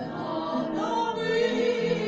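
Female vocal trio singing with vibrato to upright piano accompaniment.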